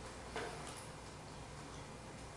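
A few light clicks from a laptop being worked, the clearest about a third of a second in, over a low steady hum.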